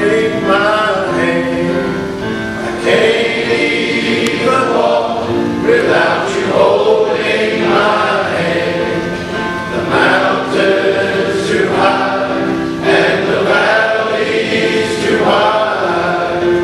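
A large men's choir singing a gospel song in harmony, the notes held and changing every second or two.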